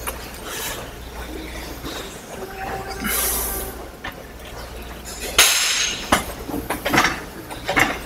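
Gym weight-stack arm machine being worked: scattered metallic clinks and knocks from the stack and pivots, with two loud rushes of breath about 3 and 5.5 seconds in.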